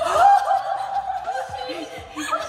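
Women's loud, high-pitched laughter that breaks out suddenly at the start and carries on.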